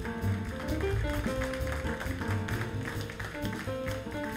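Jazz group playing live: a steel-string guitar plays a line of single notes over walking double bass, drums with ride cymbal, and piano.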